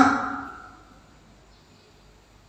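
A man's voice through a handheld microphone trailing off as he ends a phrase, the last sound fading away within about the first second, then quiet room tone for the rest of the pause.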